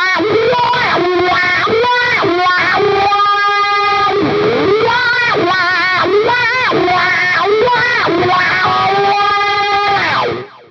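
Distorted electric guitar played through a wah pedal, repeating unison bends: two notes on adjacent strings bent against each other, the pitch rising and falling again and again and the two frequencies fighting, for an elephant-like sound.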